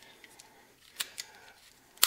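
A few faint, sharp clicks over quiet room tone, the sharpest about a second in with a smaller one just after.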